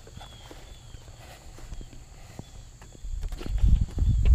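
Footsteps and handling bumps on a body-worn camera's microphone. The first few seconds are quiet with a few light clicks; then, about three seconds in, loud low thumps and rumble take over as the wearer moves right up to the model jet.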